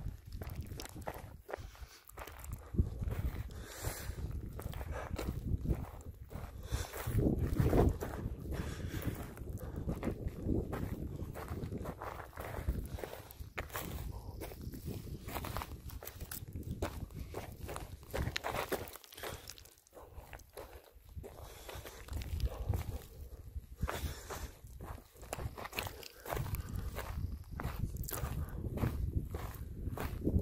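Footsteps of a hiker walking down a steep slope of loose gravel and scree: irregular steps with a steady low rumble underneath.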